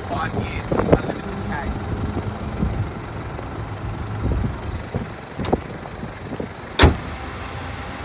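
Car bonnet being lowered and shut: a lighter knock, then about a second later one loud slam as the bonnet latches, near the end.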